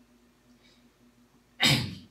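Quiet room tone, then about one and a half seconds in a single loud, sharp sneeze from a person, lasting about a third of a second.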